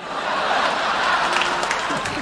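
Studio audience applauding. The applause swells in at the start and then holds steady.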